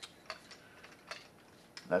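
A few light, irregularly spaced clicks, about six in two seconds.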